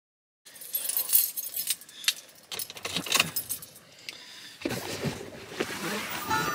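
Keys jangling, with clicks and knocks as the camera is handled inside a car, after a brief dead silence at the start. From about four and a half seconds in, a fuller, lower handling noise joins in.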